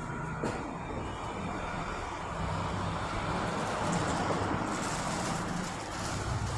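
Steady background noise of road traffic, with no single sound standing out.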